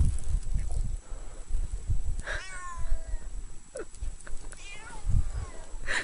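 Cat meowing: a long meow about two seconds in that falls in pitch, and a fainter, shorter one near the end, over a steady low rumble.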